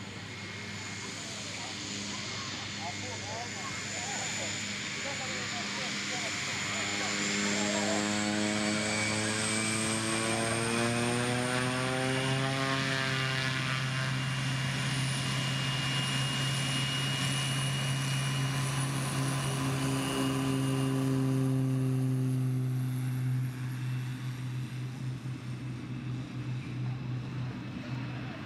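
Pilatus PC-6 Porter's engine and propeller building up for take-off: a steady drone with a high whine that climbs in pitch as power comes on, loud through the middle, then easing off near the end as the aircraft lifts off and pulls away.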